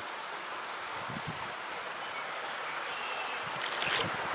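Shallow creek water running over rocks: a steady rushing sound, with a brief rustle near the end.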